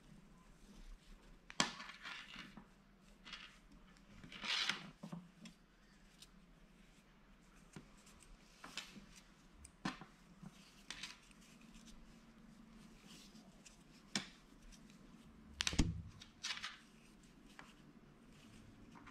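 Braided rope rustling and rubbing as it is pulled through a metal carabiner and worked into a knot by hand, with a few short sharp clicks of handling scattered through it.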